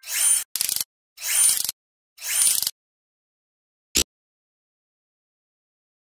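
Motion-graphics sound effects: four quick swishes in the first three seconds, each ending in rapid clicking, then one sharp click about four seconds in.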